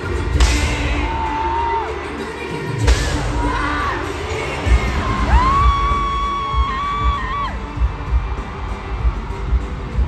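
Live pop song played loud through an arena sound system, heard from the crowd, with a sung vocal holding one long note in the middle and a steady beat coming in about halfway through. Two loud bangs cut through it, about half a second in and about three seconds in, and the crowd cheers.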